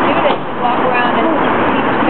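Several people's voices overlapping in chatter, over a steady background din that may include street traffic.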